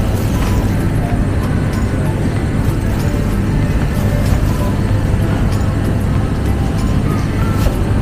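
Supermarket ambience: a steady low rumble with faint background music underneath.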